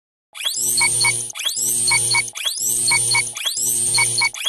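Electronic intro jingle: a short synthesized phrase of a rising sweep, then two quick blips over a held chord, repeated about once a second.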